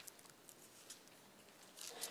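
Near silence with faint paper rustles and small clicks as the thin pages of a Bible are leafed through, with a slightly longer rustle near the end.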